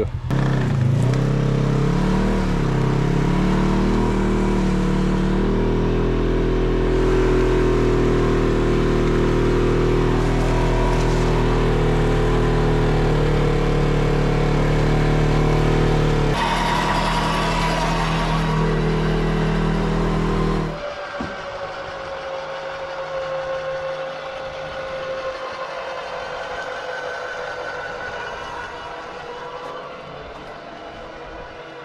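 Badlands ZXR 12,000 lb electric winch reeling in its wire rope under heavy load, dragging the Jeep as dead weight: a loud, steady drone that stops abruptly about twenty seconds in, leaving a quieter steady running sound.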